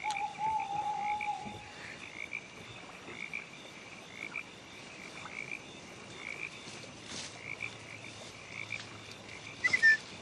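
A chorus of frogs calling, short calls repeating about twice a second. A held whistle-like tone runs through the first second and a half, and a sharp chirp falling in pitch near the end is the loudest sound.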